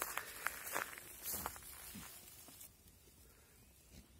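Faint footsteps and rustling through dry grass on stony ground, with a few light clicks. The sounds die away to near silence after about two and a half seconds.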